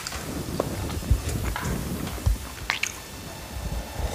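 Close-up eating sounds: a mouthful being chewed, with scattered clicks and a few soft low thuds, as fingers pick food up off aluminium foil.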